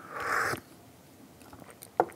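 A short slurp of tea sipped from a small cup, a noisy draw lasting about half a second. A faint click comes near the end.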